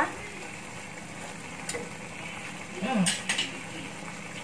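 Sweet soy sauce gravy simmering in a frying pan with a low, steady sizzle. A metal spoon clinks a few times, sharpest twice about three seconds in.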